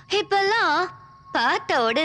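A woman's voice in two drawn-out phrases with a strongly wavering pitch, with a faint steady tone beneath.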